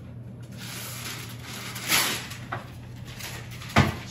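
Quiet kitchen sounds over a steady low hum: a soft rustle about halfway through, a small click, then a single sharp thump near the end.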